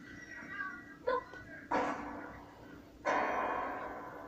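Cartoon soundtrack effects playing from a television: three short sudden sounds, about a second, 1.7 seconds and 3 seconds in. The last is the loudest and fades away slowly.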